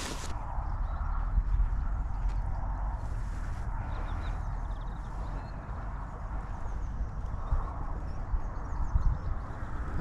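Steady low rumble and hiss of wind on the microphone, with quiet water movement as a pike is held by the tail in the shallows before swimming off.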